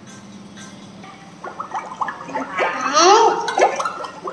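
A children's learning app playing through a smartphone speaker: over a faint steady backing tune, a run of gurgling, bubbly chirps starts about halfway through and grows louder near the end, ending in a few clicks.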